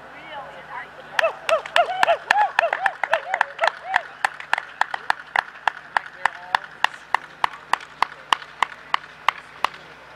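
Steady hand clapping close to the microphone: sharp single claps at an even pace, about three to four a second, from about a second in until just before the end. Voices cheer over the first few seconds of it. This is applause for a horse and rider finishing a show-jumping round.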